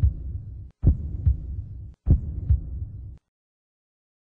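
Outro sound effect of deep, low thumps in pairs, three pairs about a second apart, in a heartbeat-like rhythm. It cuts off suddenly about three seconds in.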